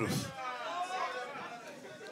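Indistinct chatter of several people talking among themselves in a hall, under a brief pause in an amplified speech; a microphone voice finishes a word right at the start.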